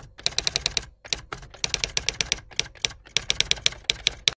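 Typewriter-style typing sound effect: quick runs of key clicks with short pauses, matching on-screen text being typed out letter by letter.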